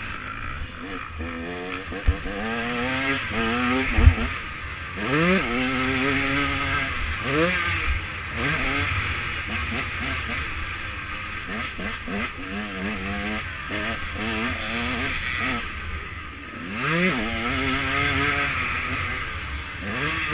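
KTM 150 SX two-stroke motocross engine revving hard and dropping back over and over as the bike accelerates, shifts and rolls off through the track's turns, with steady wind rush over the camera. Two sharp thumps about two and four seconds in, the second the loudest sound.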